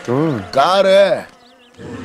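A man's voice making two drawn-out wordless sounds, each rising then falling in pitch, the second longer and louder.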